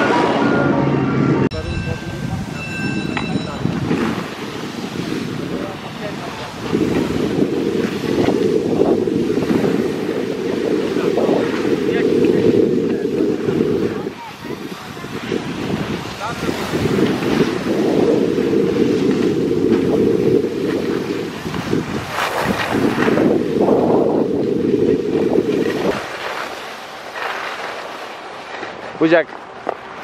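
Wind buffeting the camera microphone while skiing downhill, a rough low rushing that swells in three long gusts of several seconds each.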